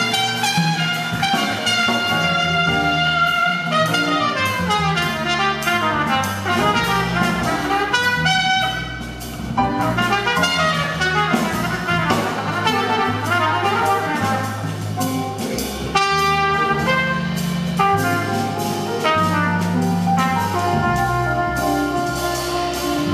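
Jazz trumpet solo with quick rising and falling runs of notes over sustained low accompanying notes.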